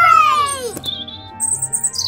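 A falling swoop of a pitched sound effect, then a run of short high chirps over soft background music.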